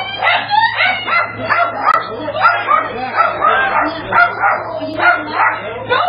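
A pet calling sharply over and over in rapid high-pitched barks, about three a second, over a steady low electrical hum in the camera's audio.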